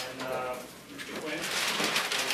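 A short, low murmured voice, then rustling of large paper sheets being handled, starting about three quarters of the way in.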